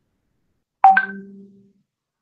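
A short electronic chime, most likely a video-call app notification: a sudden bright tone about a second in, dropping to a lower note that fades away within under a second.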